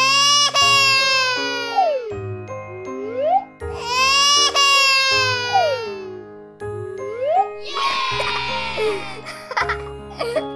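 A baby crying in three long wails, each falling in pitch, over children's music backing with sliding notes.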